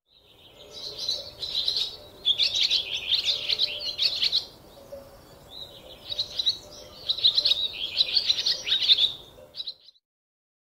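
Small birds chirping and twittering in quick, dense runs, in two bouts of about three seconds each with a short lull between.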